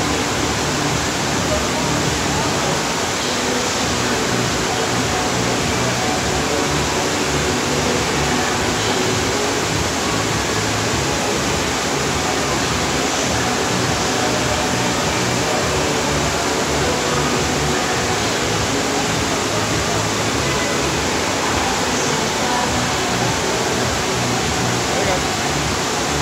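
Steady rush of water from a FlowRider surf machine, its pumped sheet of water pouring up the padded slope, with voices and music mixed in.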